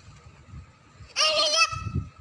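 A toddler's single high-pitched, drawn-out call, starting about halfway through, as she calls out for a cat.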